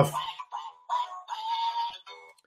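Animated plush toy duck playing a high-pitched electronic singing voice in short phrases with brief gaps.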